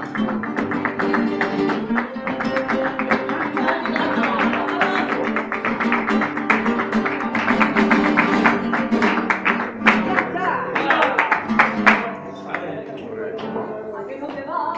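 Flamenco acoustic guitars strumming in a fast rhythm with sharp hand-clapping (palmas) over them. The playing and clapping stop near the end.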